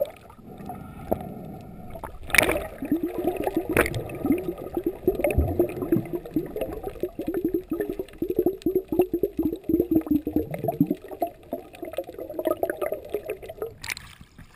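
Underwater gurgling of air bubbles, heard muffled through a camera's waterproof housing: a rapid string of short bubbly blips from about three seconds in until about eleven seconds, with a couple of sharp knocks in the first four seconds.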